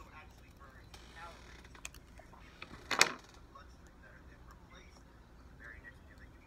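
Small scissors snipping a printed photo: a few faint snips, with one sharp, louder snip about three seconds in.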